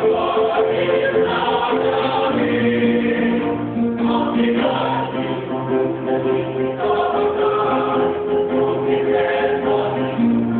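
Choir singing an organisational march-style anthem in unison, over instrumental accompaniment with a low bass line.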